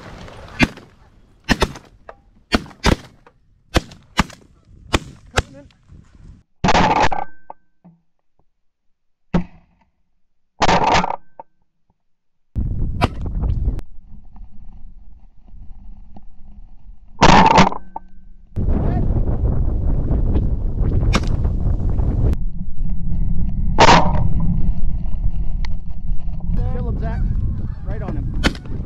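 A rapid run of shotgun shots from several guns in the first six seconds, then a few more single shots spaced out. Geese honk overhead, and from about two-thirds of the way through, wind buffets the microphone with a steady low rumble.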